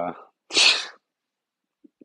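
A man's single short, sharp burst of breath, about half a second in.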